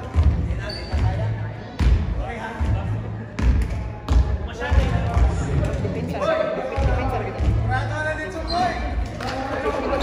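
A basketball bouncing on a hardwood gym court, in irregular single bounces, with voices calling out in the hall.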